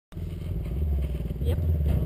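KTM quad's single-cylinder four-stroke engine idling with a steady, low pulsing beat.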